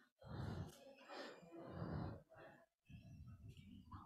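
Faint, indistinct voices of people talking away from the microphone, dropping out briefly twice.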